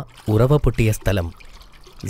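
A man narrating in Malayalam over a faint, steady sound of running water from a spring welling up.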